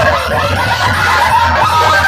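Loud DJ music from a sound-competition rig's speaker stacks, in a break where the heavy bass eases off and high, wavering pitched vocal-like sounds carry on, before the bass comes back in.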